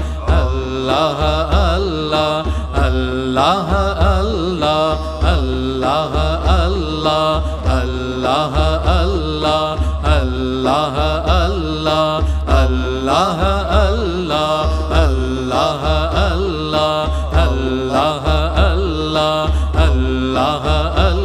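Voices singing a repeated Sufi dhikr chant over music, with a pulsing low beat underneath.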